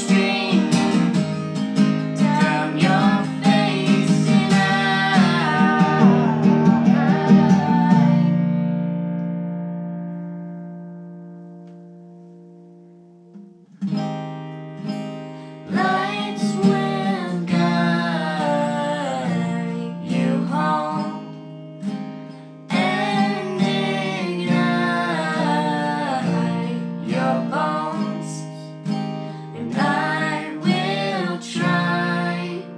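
Acoustic guitar strummed under a girl's singing. About eight seconds in, a chord is left ringing and fades away for about five seconds before the strumming and singing start again.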